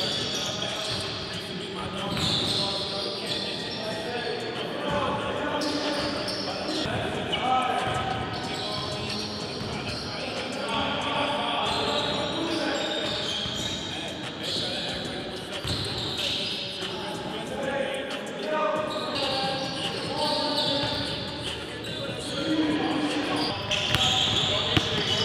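Basketballs bouncing on a hardwood gym floor, with players' voices in the background of a large gym hall.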